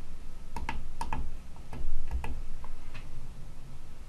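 Tactile pushbuttons on a relay computer's hex keypad being pressed to enter data, making a series of short, irregular clicks, mostly in the first three seconds.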